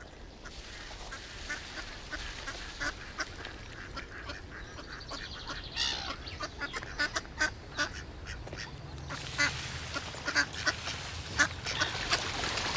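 Mallard ducks quacking on a pond: many short calls over a steady outdoor hiss, coming thicker and louder in the last few seconds.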